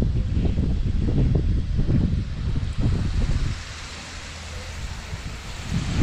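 Wind buffeting the microphone outdoors: a heavy, rough rumble that starts suddenly, eases a little in the second half and picks up again near the end.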